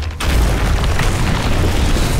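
A deep trailer boom hits just after a brief dropout, then carries on as a dense, noisy rumble with heavy low end.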